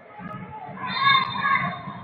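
Loud, high-pitched shouting from players on a football pitch: one sustained cry about a second in, over a stadium background.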